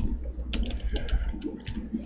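Typing on a computer keyboard: a run of quick, uneven keystroke clicks.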